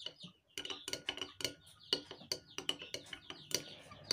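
A metal spoon stirring water in a glass jar, tapping and clinking against the glass in light, irregular clicks. Faint chick peeping sounds behind it.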